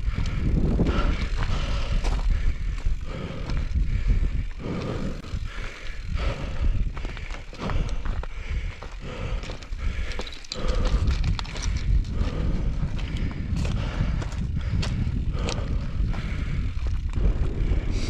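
Mountain bike rolling slowly up loose gravel and rock, the tyres crunching with many scattered clicks of stones. Wind rumbles on the microphone throughout.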